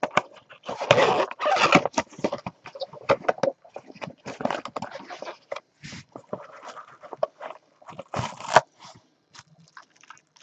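Small cardboard box being opened and handled, and a baseball sealed in a plastic bag drawn out of it: irregular rustling, scraping and crinkling of cardboard and plastic. The handling is loudest about a second in and again just after eight seconds.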